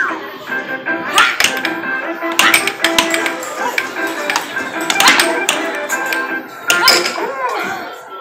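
Arcade machine music and electronic tones playing steadily, cut by several sharp clacks as the boys strike the pieces on the table game, over background chatter.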